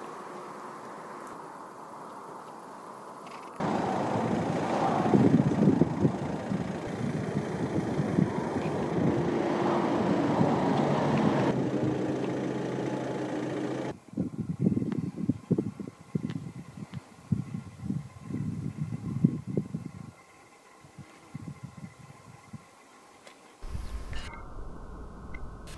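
Outdoor background noise: a steady low rumble that changes abruptly several times, louder in the middle and then coming in irregular low gusts, fading near the end.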